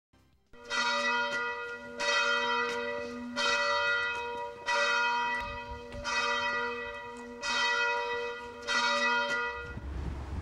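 A single church bell tolling: seven strokes about a second and a quarter apart, each ringing on until the next. The ringing cuts off just before the end.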